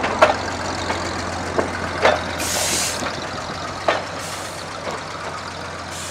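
Small locomotive and its passenger car rolling slowly on rails, with the engine running steadily under sharp clanks of wheels and couplings over the track. Two short hisses of air come near the middle.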